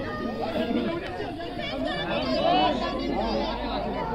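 Many voices chattering and calling out at once, overlapping so that no single speaker stands out.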